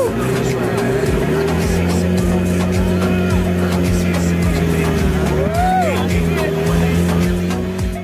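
Motorboat engine running steadily, its pitch stepping up about a second and a half in, mixed with background music that has a steady beat. A single rising-and-falling whoop comes near the six-second mark.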